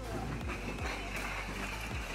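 A stacked load of bricks sliding and tumbling off the side of a flatbed truck, a continuous clattering rush with a few dull thuds, over a steady low hum.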